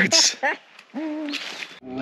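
A man's short laugh, then after a brief pause one held, slightly falling hum from a voice.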